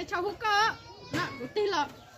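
A high-pitched voice speaking in short, lively phrases.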